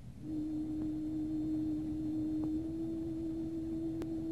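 A single held musical note from a film score, an almost pure steady tone that steps slightly in pitch about halfway through, over the low rumble and hiss of an old soundtrack.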